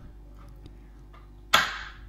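A knife cutting down through butter and knocking once on a plastic chopping board about one and a half seconds in: a single sharp knock that fades quickly.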